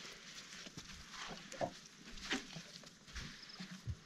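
Hippopotamus walking away over a muddy riverbank: scattered soft footfalls, a couple of short grunts about a second and a half and two seconds in, and a low thump near the end.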